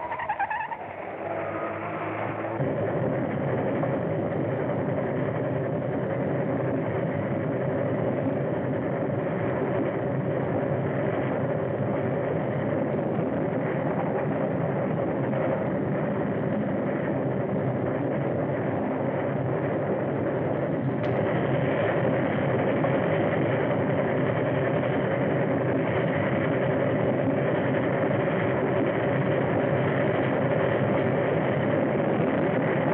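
Steady drone of a running engine, with one click about two-thirds of the way through, after which it is a little louder.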